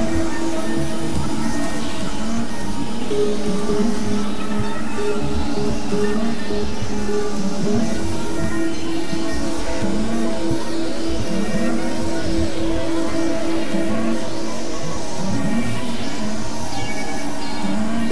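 Experimental electronic synthesizer drone music: steady held low tones, with arching, wavering pitch sweeps repeating above them at an even loudness.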